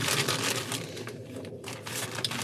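Clear plastic bag crinkling and rustling as items are rummaged out of it, busiest in the first second and a half.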